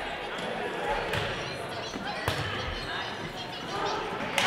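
Volleyball rally in a gymnasium: the ball is struck sharply off players' hands and arms, with clear hits about a second in and again a little past two seconds, echoing in the hall.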